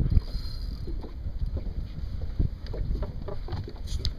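Wind rumbling on the microphone and water lapping against a small boat's hull, with a few light knocks.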